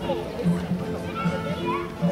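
Live folk dance music from a small band, with a bass note pulsing steadily on the beat. Children's voices and chatter run over it.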